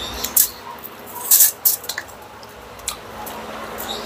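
Close-up chewing of crispy fried pork belly (liempo) eaten by hand: wet mouth sounds broken by a few short, sharp crunches of the crackling skin, the loudest pair about a second and a half in.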